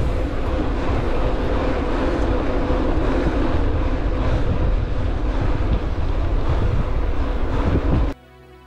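Wind buffeting the handlebar camera's microphone while riding an e-mountain bike, a dense low rumble with a faint steady hum running through it. It cuts off abruptly at the end.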